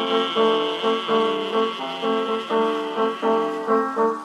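Solo piano from a 1920s 78 rpm record playing an instrumental interlude with no singing: repeated chords in a steady rhythm of about three a second.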